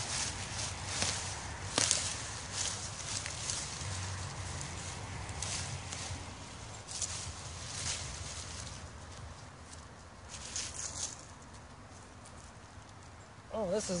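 Gloved hands digging through wood-chip mulch and soil and pulling sweet potato vines: irregular rustling and crunching, with a sharp click about two seconds in.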